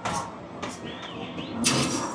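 Basketballs hitting an arcade basketball machine: a sharp knock at the start, another just under a second in, and a longer rattle near the end, as a shot goes in.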